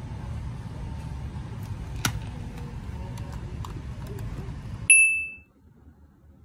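Low shop room noise with a sharp click about two seconds in and a few light clicks after it, then a single short, high electronic beep from a checkout barcode scanner, the loudest sound.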